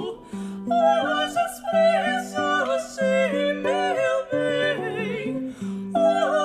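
Two female voices, soprano and mezzo-soprano, singing an 18th-century Brazilian modinha with vibrato over a plucked accompaniment of spinet and guitar. The singing breaks off for a moment just after the start, then resumes over the plucked notes.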